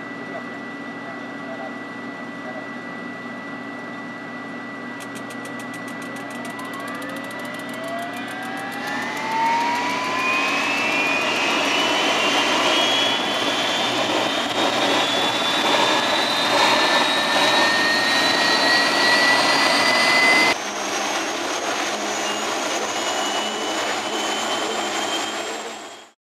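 Helicopter turboshaft engines starting on a ground function test: a steady high whine, then several whines climbing slowly in pitch and growing louder over about ten seconds as the turbines spool up. About 20 seconds in the sound cuts abruptly to a quieter, steady whine.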